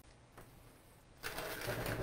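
Soft rustling and scraping of potting soil and leaves as a large plant is pressed down into a pot. It starts about a second in and lasts about a second.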